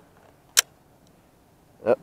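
A single sharp click about half a second in: a button pressed on a handheld full-spectrum video camera.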